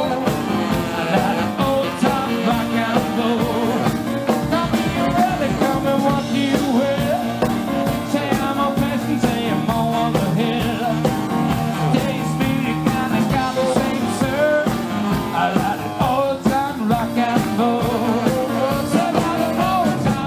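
Live rock and roll band playing, with a saxophone soloing over keyboard and drums.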